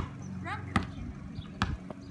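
A basketball being dribbled on a concrete driveway, bouncing three or four times, a little under a second apart.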